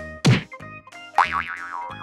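Cartoon sound effects over a children's background-music loop: a quick falling swoop about a quarter second in, then a wobbling, warbling tone from about a second in, dubbed onto a toy ball being passed and rolling.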